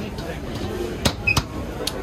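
Metal serving tongs clicking against steel plates and the steamer as momos are served: three sharp clinks, two about a second in and a third near the end.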